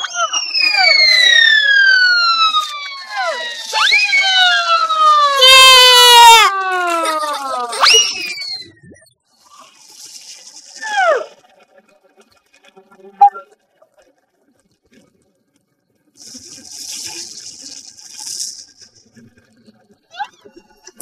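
Cartoon sound effects of exploding wooden log creatures. Several falling whistles overlap through the first eight seconds, with a warbling whistle and a burst about six seconds in. After that come softer short falling whistles, a click and high fizzing hiss, with a near-silent gap in between.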